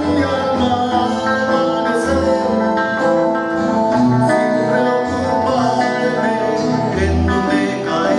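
Live band music: guitars and an accordion play a steady accompaniment with held melody notes and occasional deep bass notes.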